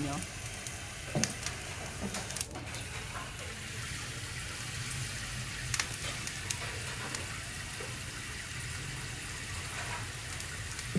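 A kitten eating fish from a plate: scattered small wet clicks of chewing and mouthing over a steady background hiss.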